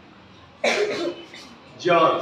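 A man coughs once, suddenly, about half a second in, then starts speaking near the end.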